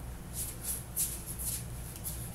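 Faint, irregular rustling swishes of clothing and body movement as a man swings small hand weights, over a low steady hum.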